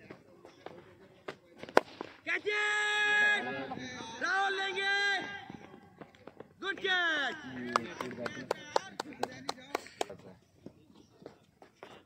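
A sharp crack of a leather cricket ball off the bat, then players shouting: a long held call, more calls, and a shout falling in pitch as the batsmen run. Scattered sharp taps follow near the end.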